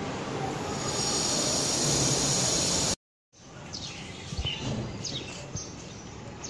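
Steady loud background noise that cuts off abruptly about three seconds in. After a short gap comes quieter outdoor ambience with three short falling bird chirps.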